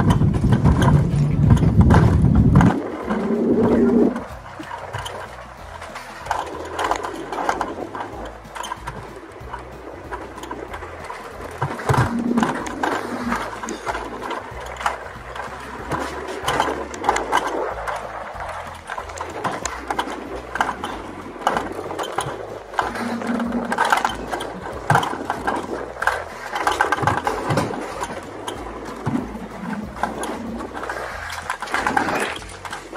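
Mountain coaster sled running fast down its steel tube track, its wheels rattling and clicking continuously. Wind buffets the microphone loudly at first and drops away about three to four seconds in.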